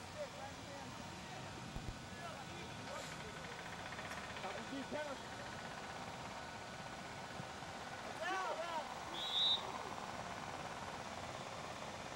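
Open-field soccer match sound: players' shouts, faint at first and louder about eight seconds in, then one short referee's whistle blast just after.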